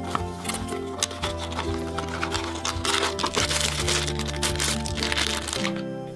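Background music with held, sustained notes, over the crinkling and crackling of a cardboard blind box and its packaging being torn open by hand.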